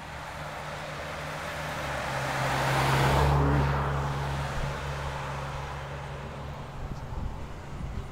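A car passing by on the road: tyre and engine noise swells to a peak about three seconds in, then fades away. A steady low hum runs underneath throughout.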